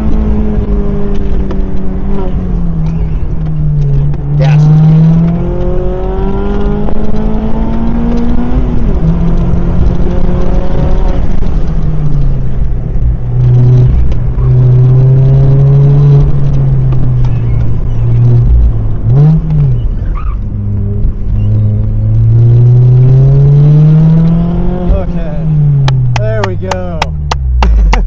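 Mazda MX-5 Miata (ND) 2.0-litre four-cylinder engine driven hard through an autocross course, heard from the open cockpit: the revs climb under acceleration and drop again as the driver lifts and brakes, over and over. About two-thirds through there is one quick rev blip, and near the end the revs fall away steeply as the car slows after the run.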